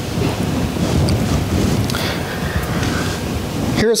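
Loud rumbling, hissing noise on a microphone, like wind buffeting it, that fills nearly four seconds and cuts off suddenly near the end.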